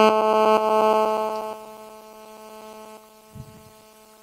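A steady electrical buzz with many even overtones in the microphone or sound system. It fades away between about one and a half and two seconds in and lingers faintly after that.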